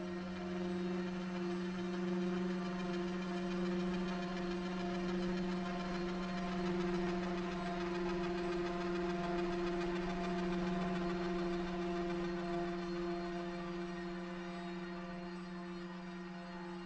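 Ambient background music: a steady low drone of held tones, with no beat.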